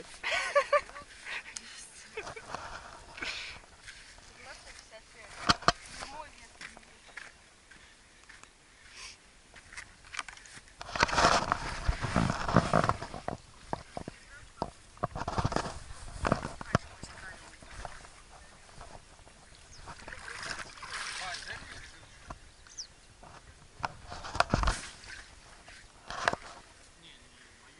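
Water sloshing and splashing around a small inflatable boat out on a river, in irregular bursts, the loudest about halfway through.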